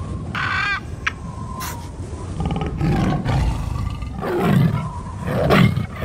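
Sound effects of a tiger roaring in several loud pulses, the loudest two near the end, after a short squawking call near the start.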